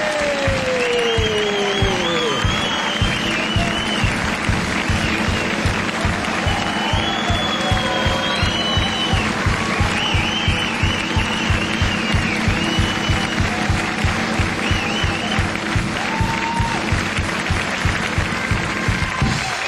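Up-tempo dance music with a fast, steady beat and high wavering melody lines, a long falling tone sliding down in the first two seconds. The audience claps and cheers along underneath.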